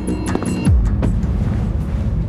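Tense background music with a quick beat, cut off about two-thirds of a second in by a deep bass sweep falling sharply in pitch. A low steady rumble is left after it.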